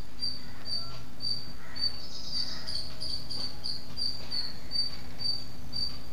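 A cricket chirping in a steady rhythm, about two short high chirps a second, over a faint low electrical hum.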